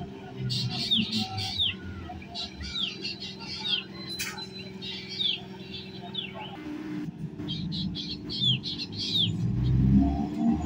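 Birds chirping repeatedly with short, falling calls over the low hum of an electric multiple-unit (EMU) local train approaching, its rumble building near the end as the coaches draw alongside.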